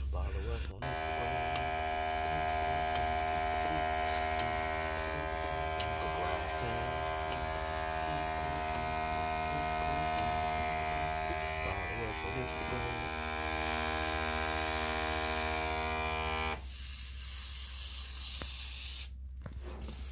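An electric sprayer's pump motor runs with a steady whine while its wand mists cleaning solution onto carpet stains. The whine cuts off suddenly about 16 seconds in, leaving a low hum.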